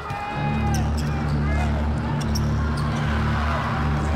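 Basketball dribbled on a hardwood court, over arena background music with a steady low bass. Short sharp hits and brief squeaks of play on the court come through now and then.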